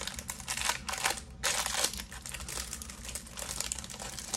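Plastic wrapping crinkling and rustling in irregular bursts as a box of baseball cards is ripped open.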